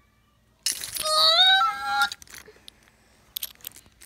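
A child's high-pitched squealing cry in play, starting about half a second in and lasting about a second and a half, breathy at first and then a held, slightly rising note. It is followed by a few faint light clicks from the plastic toy figures being handled.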